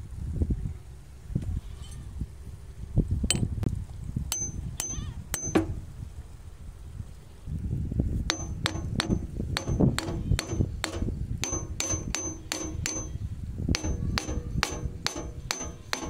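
Hammer tapping a bearing down into the steel bearing housing of a hand tractor's gearbox, metal on metal. A few scattered strikes come first, then from about eight seconds in a steady run of about two to three light taps a second, each with a brief high ring.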